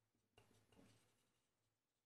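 Near silence, with faint strokes of a marker writing on a whiteboard lasting under a second, starting about half a second in.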